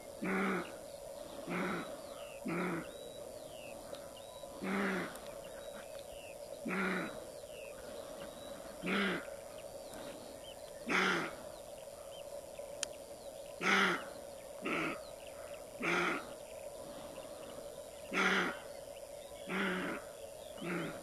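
Roe deer buck barking: about a dozen short, hoarse barks at irregular intervals of one to two seconds, some longer than others. Faint bird chirps sound in the background.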